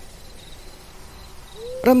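Faint night ambience of crickets chirping steadily, a sound-effect bed under the narration.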